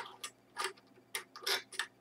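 Metal compression fittings being hand-tightened onto a water-cooling block, giving about five sharp, irregularly spaced clicks and ticks in two seconds.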